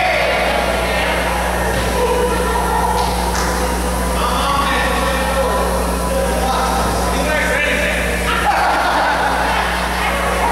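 Voices of a crowd talking in a large, echoing hall, with music playing over them and a steady electrical hum underneath.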